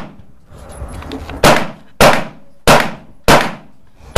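Four shots from a 9mm semi-automatic pistol, a SAR9 METE, fired at a steady pace about two-thirds of a second apart, starting about a second and a half in, each with a short echo.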